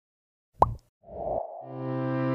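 A short plop sound effect about half a second in, followed by a brief noisy swish, then background music fading in on a held chord near the end.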